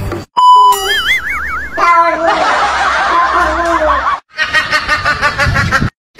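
Comedy sound effects laid over the clip: a short steady beep and a warbling, wobbling tone, then a snickering cartoon laugh that comes in quick repeated bursts after a brief gap.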